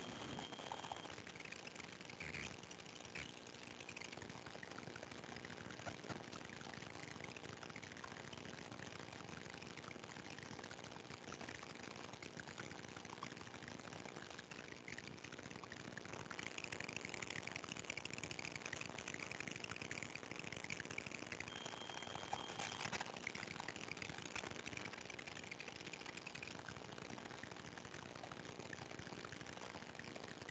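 Faint background noise of an open videoconference line: a steady low hum under a hiss, with a patch of faint indistinct higher-pitched noise in the middle.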